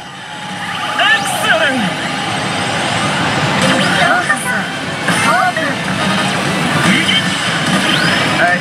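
HEY! Elite Salaryman Kagami smart pachislot machine playing its electronic sound effects and music as the reels spin, over the dense, steady din of a pachinko hall.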